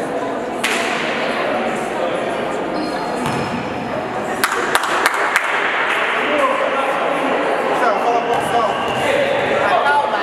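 Many voices talking at once in an echoing sports hall, with a few sharp knocks about halfway through.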